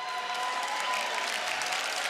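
Studio audience applauding, a steady wash of clapping, with a few faint held tones underneath.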